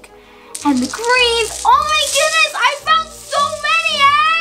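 A girl's excited vocal exclamations, high and gliding in pitch, over background music.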